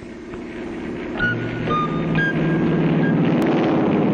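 Airplane engines running and growing louder over the first second or so, then holding steady, with a few short high tones sounding over them.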